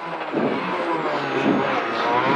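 Peugeot 206 RC Group N rally car's 2.0-litre four-cylinder engine running hard under load, heard from inside the cabin. The engine note rises and falls as the car is driven through the stage.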